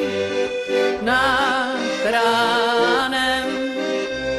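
Music: an accordion playing a melody over a pulsing bass and chord accompaniment, an instrumental passage of a song.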